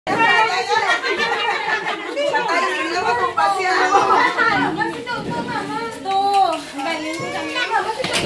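A group of people talking and calling out over one another, with children's voices among them: lively overlapping chatter.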